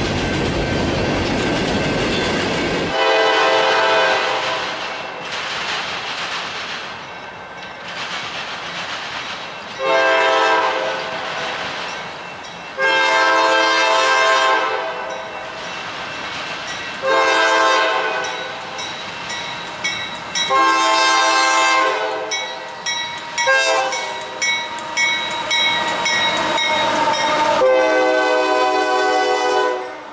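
A freight train rolling past with rumbling wheel noise. Then, about three seconds in, a CSX freight train's diesel locomotive air horn sounds a string of long blasts, a run of short toots, and a last long blast, with rail cars clattering by underneath.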